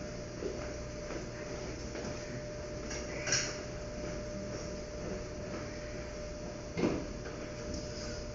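Steady hum of equipment in a treatment room, with a brief sharp sound about three seconds in and a short knock just before seven seconds.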